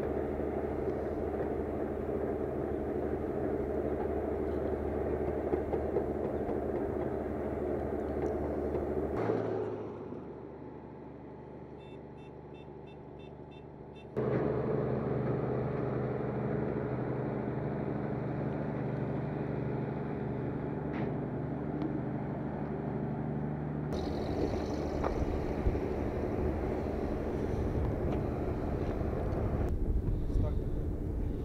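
Steady hum of the diesel locomotive and rail transporter hauling the Proton-M rocket along the track. The sound drops for a few seconds about nine seconds in, returns at about fourteen seconds with a steadier engine tone, and turns into a rougher rumble at about twenty-four seconds.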